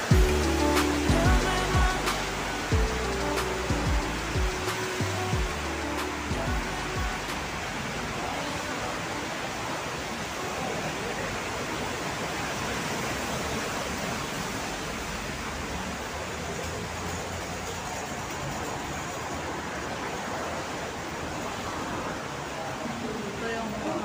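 Background music with a steady beat that ends about six or seven seconds in, followed by a steady, even rushing noise.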